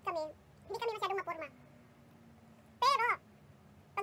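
One short high-pitched call about three seconds in, rising and then falling in pitch, set apart from the surrounding talk.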